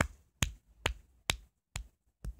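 Sharp clicks or taps at an even pace, about two a second, five of them in a row.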